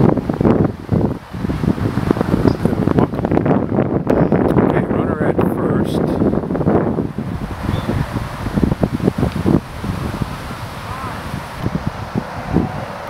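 People talking in the background, with wind rumbling on the microphone.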